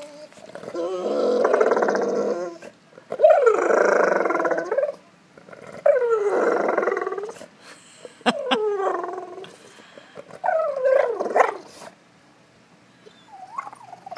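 A golden retriever vocalizing in a run of about five drawn-out whines and groans, the later ones shorter and falling in pitch. The dog is fussing for its ball.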